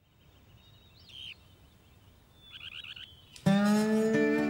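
Faint outdoor ambience with a bird chirping once and then in a quick run of chirps, until guitar music comes in suddenly near the end with a sustained, ringing chord.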